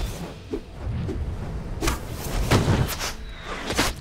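Dramatic film score with whooshing and thudding sound effects over a low rumble, punctuated by several sharp hits; the loudest comes about two and a half seconds in, with another just before the end.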